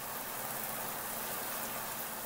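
Mira Advance ATL thermostatic electric shower running on fully cold during its one-minute commissioning run, water spraying steadily from the handset.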